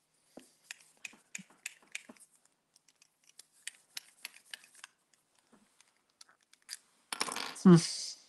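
A fountain pen filled with white ink being rolled and turned between the hands to mix its settled pigment, giving a quick run of light clicks and ticks for several seconds. A short burst of rustling follows near the end.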